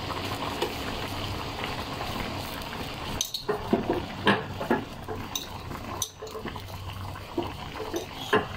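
Fish-head soup at a hard boil in an aluminium wok, bubbling steadily. Several sharp clinks of a metal spoon against the wok fall in the middle seconds.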